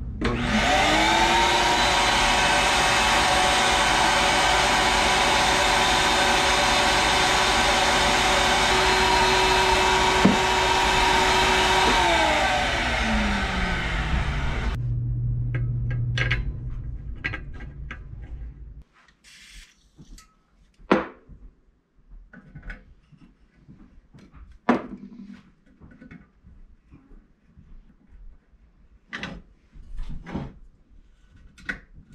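Wall-mounted shop vacuum switched on, spinning up with a rising whine, running steadily for about twelve seconds, then switched off and winding down with a falling whine. After it, scattered sharp metal clicks and knocks as a hand tap is worked into the stainless steel exhaust's O2 sensor bung.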